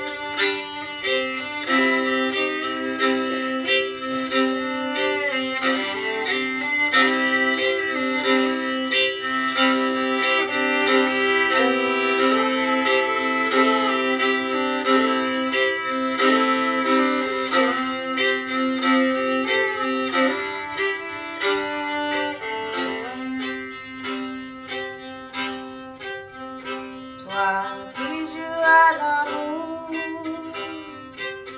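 Fiddle playing a tune live, a bowed melody held over a steady beat.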